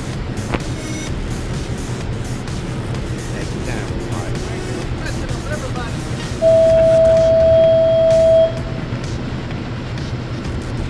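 Steady low hum of a boat's idling outboard motor under wind and water noise. Past the middle a loud, pure steady beep holds for about two seconds and then stops.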